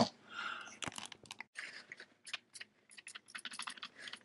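Trigger spray bottle squirting soapy water onto air brake manifold fittings to check them for leaks: short hisses in the first second and again around two seconds in, among light clicks and crackles of handling.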